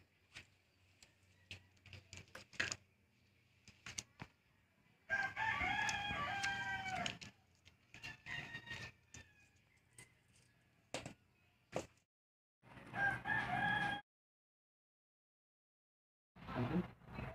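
Two long, wavering animal calls, each about two seconds, the second cut off suddenly, over light scattered clicks and knocks.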